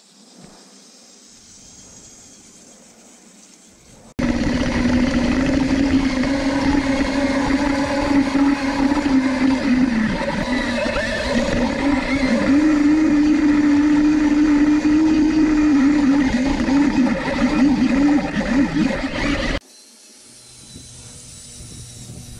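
Devastator tank chassis's gear motors whining and its treads rattling as it drives over grass, heard close from a camera mounted on the chassis. The whine rises and falls a little with speed. The sound starts abruptly about four seconds in and cuts off a couple of seconds before the end.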